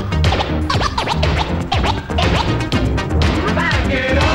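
Vinyl record scratched by hand on a turntable with Stanton 500 cartridges, over a playing beat: many quick back-and-forth cuts that sweep up and down in pitch in close succession.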